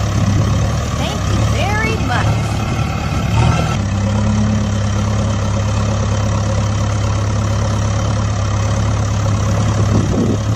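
Tractor engine sound running steadily, settling into a slightly different steady tone about four seconds in. Short gliding voice-like sounds come in the first few seconds.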